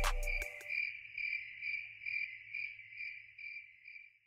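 The beat cuts out about half a second in, leaving a cricket-chirp sound effect at the tail of a hip-hop track. The chirps repeat about three times a second and fade away.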